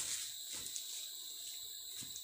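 Insects droning steadily at a high pitch, with faint rustling now and then.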